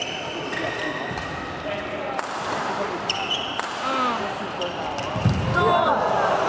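A badminton doubles rally on an indoor court: sharp racket strikes on the shuttlecock about once a second and short high squeaks of shoes on the court floor, with spectators' voices growing louder near the end.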